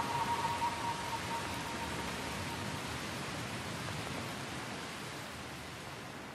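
Steady rushing wash of surf on a beach, slowly fading, with the last note of music dying away in the first second or so.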